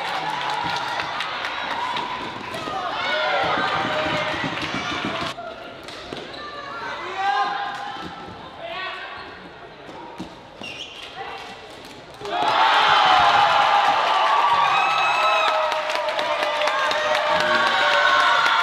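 Indoor floorball play: plastic ball and stick clicks with players' voices shouting, then about 12 seconds in a sudden loud crowd cheer as a goal is scored, carrying on to the end.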